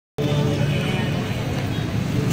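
Muffled low rumble with faint music in it, from an outdoor concert sound system, beginning suddenly just after the start.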